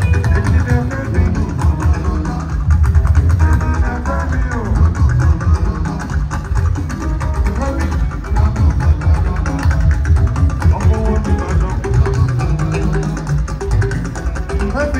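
Juju band music: plucked guitar lines over a heavy bass guitar with dense percussion, playing without a break.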